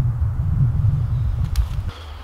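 Wind buffeting the microphone: an uneven low rumble, with a short click about one and a half seconds in. The rumble drops off suddenly just before the end.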